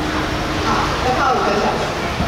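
A woman talking into a handheld microphone, over steady outdoor background noise.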